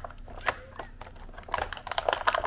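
Hard clear plastic blister packaging clicking and crackling as fingers grip and pry at it, a scatter of sharp clicks that gets busier near the end.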